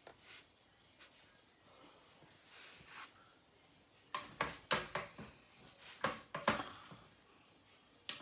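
A series of short rustles and knocks, like objects being handled on a table, loudest and most frequent between about four and seven seconds in.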